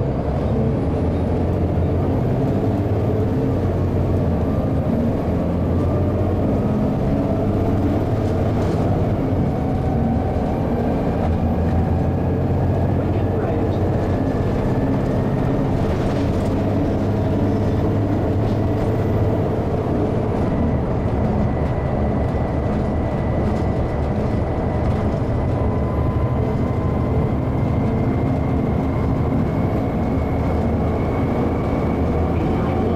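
Volvo B7TL double-decker bus accelerating, heard from the upper deck: a steady low diesel drone, with a whine that climbs slowly in pitch as speed builds. The whine breaks and restarts about a third and two thirds of the way through as the automatic gearbox changes up.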